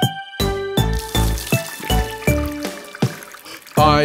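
Instrumental break in a bouncy children's song: backing music with held notes over a steady beat. Singing comes back in just at the end.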